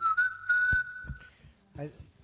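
A single high, steady whistle-like tone held for just over a second, with a click partway through and a brief faint voice near the end.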